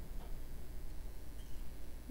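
Quiet room tone with a low steady hum and a few faint light clicks, like small handling noises at a table.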